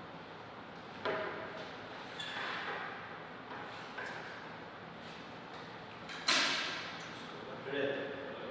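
Low voices talking in a large, echoing hall. About six seconds in there is one sharp knock that rings out for about a second.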